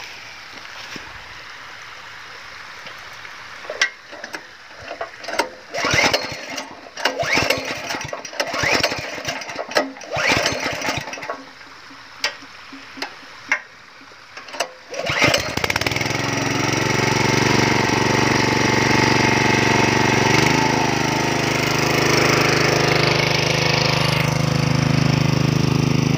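The small petrol engine of a 7 hp Ogawa water pump, not run for a long time, is given a string of short starting attempts. It catches about fifteen seconds in and then runs steadily.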